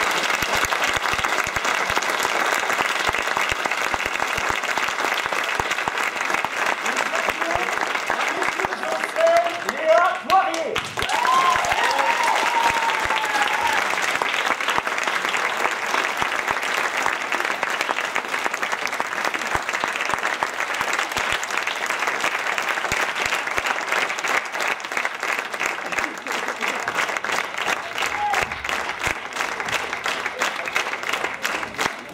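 Theatre audience applauding steadily during a curtain call. A few voices call out briefly about ten seconds in.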